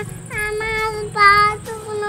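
A small girl singing in a high voice: three short held notes at nearly the same pitch, a sing-song chant.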